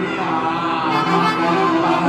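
Live music from a small band: a guitar playing over a bass line, carrying steady held notes.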